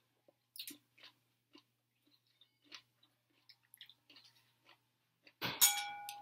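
Eating sounds: chewing in short separate bites. Near the end, a metal fork strikes a ceramic plate with a sharp clink that rings and fades over about a second.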